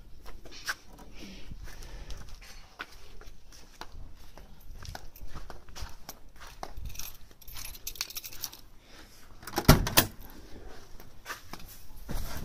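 Keys jingling and small clicks and rattles as someone walks to a car, then one loud clunk near the end as the 1967 Camaro's driver's door is unlatched and swung open.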